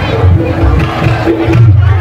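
Live Javanese music accompanying a jathilan (kuda lumping) horse dance: held pitched tones over a steady low beat, loud, with a crowd's shouting voices mixed in.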